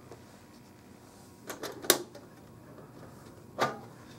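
Metal tin lunchbox being opened by hand: a few short clicks and knocks of its catch and lid, the sharpest about halfway through, another near the end as the lid comes up.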